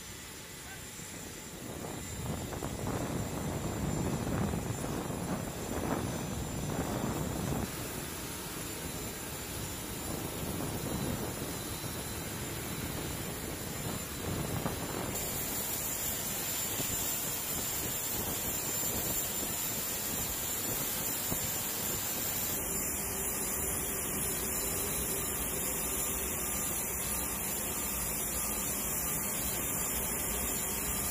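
Steady turbine whine and rumble of a KC-130J transport aircraft running on the ground. A lower engine rumble swells and fades over the first several seconds, and the high whine grows brighter about halfway through.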